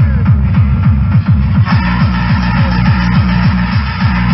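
Loud tekno played through a free-party sound system, a fast, even kick drum, each stroke falling in pitch, over a heavy bass line.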